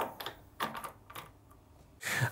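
Light metal clicks and ticks as a knurled metal blind plug is screwed hand-tight onto the high-pressure filter housing of a Brillux ProSpray 39 Select airless paint sprayer. There is one sharper click at the start, then several small ones over the next second and a half.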